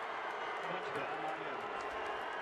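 Stadium crowd cheering, a steady wash of many voices, for a touchdown in a televised college football game.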